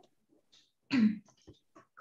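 A woman clears her throat briefly, once, about a second in, followed by a few faint mouth clicks.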